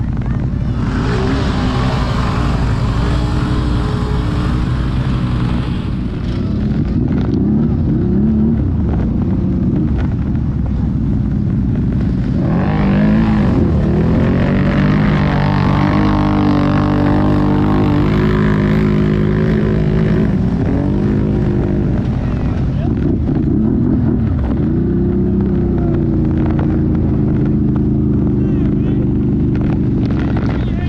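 ATV and side-by-side engines running in the mud, a steady drone with one engine revving up and down through the middle stretch.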